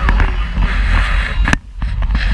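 Wind buffeting the microphone on an open ride car of Radiator Springs Racers moving along its track, a heavy low rumble with scattered clicks. A sharp crack comes about one and a half seconds in, and the rumble drops away briefly just after it.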